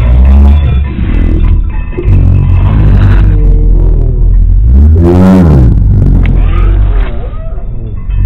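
A cartoon voice put through heavy editing effects, loud, distorted and bass-boosted, over a deep steady rumble; about five seconds in its pitch swoops down and back up.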